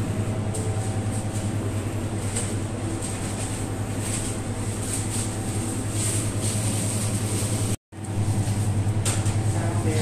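A steady low hum with a fast flutter and a thin high whine above it, cut off for an instant by an edit about eight seconds in and then continuing.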